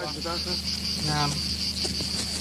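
Crickets chirring in a steady, high-pitched drone, with faint men's voices and a low hum beneath.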